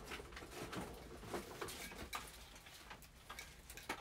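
Faint, scattered clicks and light knocks of objects being handled and moved about at a desk.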